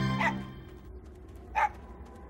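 A small dog barks twice: once as a music cue ends, and again, louder and sharper, about a second and a half in.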